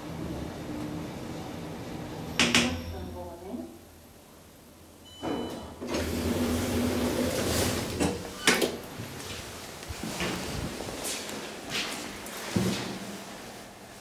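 Elevator car running with a low hum, then stopping with a clunk about two and a half seconds in. After a short pause comes a brief high beep, then the car doors sliding open with a motor hum, followed by several sharp clicks and thumps as the manual swing landing door is pushed open and swings back shut.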